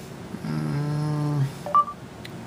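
A man's held "mmm" hum for about a second, then a short, sharp electronic beep from an Android phone: Google voice search's start tone, signalling that it is listening.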